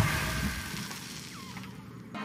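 A deep rumble dying away after an impact, fading into a quiet hiss, with a faint short chirp about one and a half seconds in.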